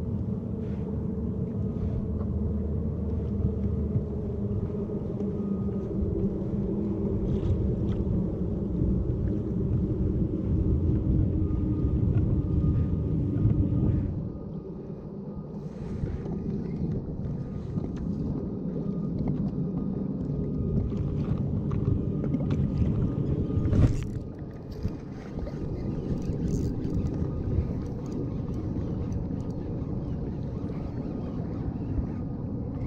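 Steady low rumble of wind and water around a fishing kayak on choppy open water, easing briefly partway through. A single sharp knock comes near the end.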